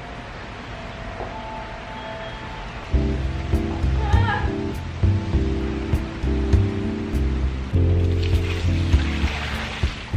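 Background music: a quiet, sparse opening, then a full bass-heavy track with a steady beat comes in about three seconds in.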